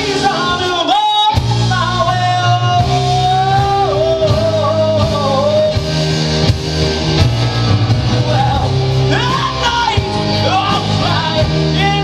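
Live rock band playing: stage keyboard, electric guitar, bass guitar and drums, with a male lead vocal sung over it. There is a short break about a second in.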